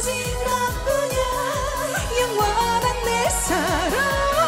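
Korean trot song: a woman sings the melody over an upbeat accompaniment with a steady, regular beat, ending on a held note with wide vibrato.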